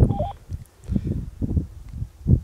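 Two-way radio's short stepped beep near the start, then a few low muffled thumps.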